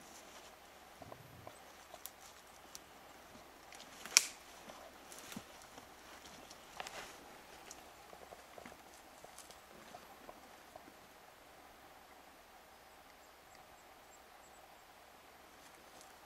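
Scattered knocks and scrapes of boots and hands on the wooden pole rungs and platform of a homemade tree stand as a man climbs up it, with one sharp knock about four seconds in and another a few seconds later. The knocking dies away for the last few seconds.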